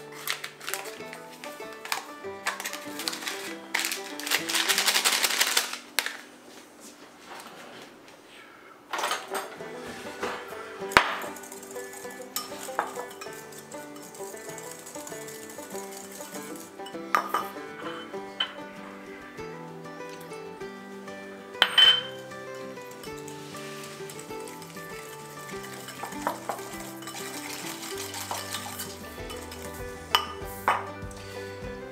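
Background music with a steady melody over kitchen sounds. A paper pectin packet rustles loudly a few seconds in. Later a wire whisk clinks and scrapes in a small ceramic bowl, mixing powdered pectin with sugar and lemon juice, with a few sharp clinks standing out.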